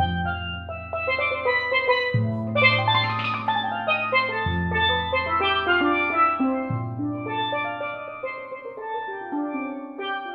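Steelpan improvisation on a multi-pan setup of Steve Lawrie–built pans, played with five mallets. Sustained low notes change about every two seconds beneath a quick, rippling stream of higher ringing notes.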